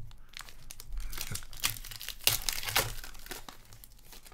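Foil wrapper of a hockey card pack being torn open and crinkled by hand, a dense run of crackles loudest in the middle.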